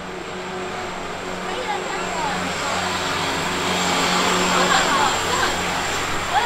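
Noise of a passing vehicle that swells steadily over several seconds, loudest about four to five seconds in, over a steady low hum.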